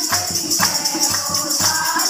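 A group of women singing a devotional bhajan together, clapping their hands to a steady beat of about four a second, over a constant jingling percussion.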